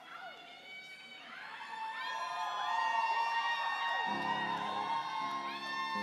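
Live concert audience whooping and cheering, with many overlapping rising-and-falling calls. About four seconds in, the band comes in with low sustained chords, the start of the song's intro.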